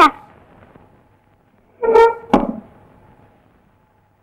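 A loud cry breaking off right at the start, then about two seconds in a short honk-like tone followed at once by a thump.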